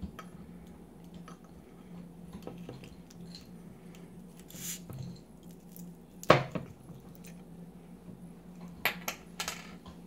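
Hands fiddling with the foil-wrapped neck of a glass beer bottle: faint scratching and small clicks, one sharp knock about six seconds in, and a few short rustles near the end.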